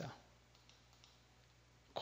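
Near silence: faint room tone with a steady low hum, between phrases of narration.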